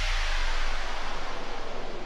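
A white-noise sweep from electronic music, a steady hiss slowly fading out over a faint low hum, in the gap between two tracks of a workout music mix.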